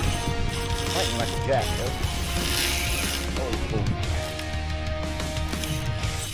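Spinning reel being cranked, its gears whirring as line is wound in against a hooked fish, over a steady low hum.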